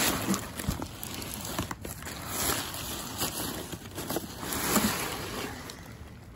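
Rustling and crinkling of a plastic bag and folded nylon fabric being handled, with scattered small clicks and knocks.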